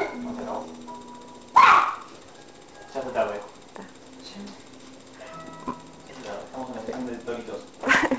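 Faint music with a few short bursts of voices, and one loud yell about one and a half seconds in.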